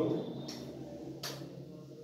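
A pause in a man's speech: low room noise with two small clicks, a faint one about half a second in and a sharper one a little past a second in.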